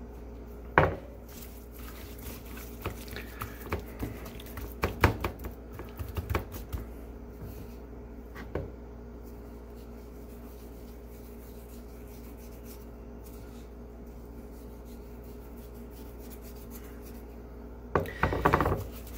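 Gloved hands rubbing salt into the raw skin of a spatchcocked Cornish hen on a ceramic plate, with scattered sharp taps and clicks of fingers and the salt bowl against the plate, mostly in the first half. The second half is quieter handling over a faint steady hum.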